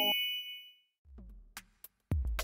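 A bright, bell-like ding from a transition jingle, ringing out and fading in under a second. Near the end come faint soft beats and clicks as the next background music starts.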